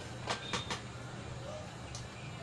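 Three quick light clicks of small items being handled on a workbench, over a steady low hum.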